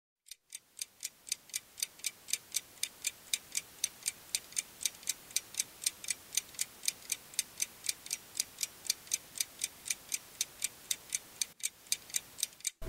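Fast, even, clock-like ticking, about four sharp ticks a second, fading in over the first couple of seconds and stopping shortly before the end.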